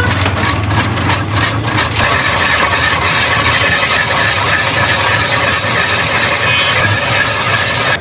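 A hand-cranked cast-iron ice shaver being turned, its blade scraping a block of ice into shavings with a steady, continuous scraping noise and quick ticks over the first couple of seconds.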